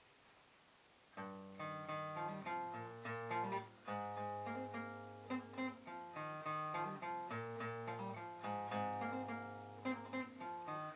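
Acoustic guitar strummed in a steady chord pattern, starting about a second in after a brief quiet: the instrumental introduction to a song, before the singing begins.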